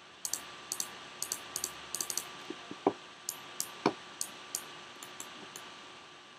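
Light, quick clicks from a computer mouse and keyboard, many in close pairs, about twenty over a few seconds, with two duller knocks near the middle.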